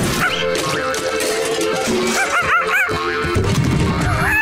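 Cartoon background music with short, high yapping barks from a dog-like cartoon pet: one near the start and a quick run of about three a little past the middle.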